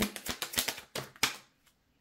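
A deck of tarot cards shuffled by hand, a quick run of crisp card clicks that fades out about a second and a half in.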